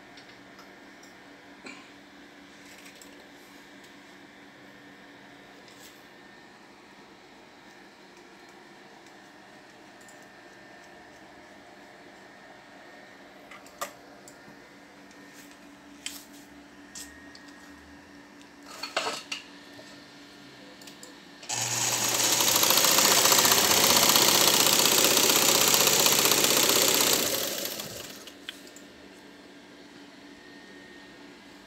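A Vigorelli electric sewing machine with an all-iron mechanism sewing a zigzag stitch: it runs steadily for about six seconds in the second half, then slows and stops. Before it starts there are a few light clicks and knocks.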